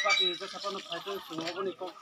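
Speech: a person talking at conversational level.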